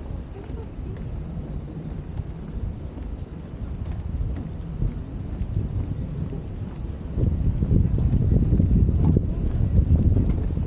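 Wind buffeting the camera microphone as a low, irregular rumble, growing louder and gustier about seven seconds in.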